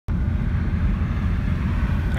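Car driving at highway speed, heard from inside the cabin: a steady low rumble of road and engine noise.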